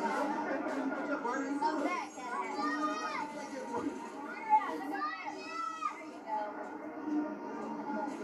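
Crowd chatter and children's high voices over background music, with a brief sharp sound about four and a half seconds in.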